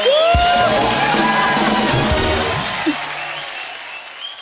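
A short music sting from the show's band, with bass and drums, played over studio audience applause after a punchline. It fades out near the end.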